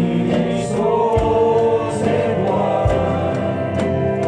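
A group of men singing a gospel worship song together into microphones, with instrumental accompaniment and occasional low thumps.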